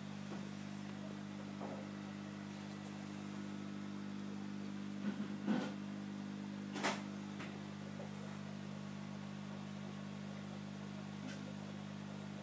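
Steady low mains hum of an aquarium pump running, with a few short knocks about five and seven seconds in.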